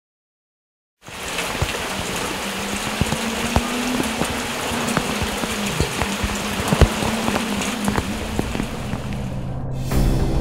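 Rain falling on leaves and grass, a steady patter with scattered louder drops. It starts about a second in and cuts off just before the end.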